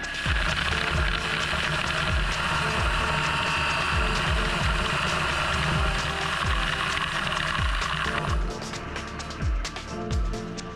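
Walter Vision CNC tool grinder contour-grinding a carbide tool blank with an XPP Plus diamond wheel under flood oil coolant: a steady hiss of wheel on carbide and coolant spray, which stops about eight seconds in as the grind finishes. Background music with a steady beat plays underneath.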